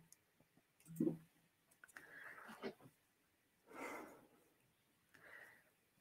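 Mostly quiet, with a few faint, brief rustles and clicks as a spool of thread is handled to change thread colour.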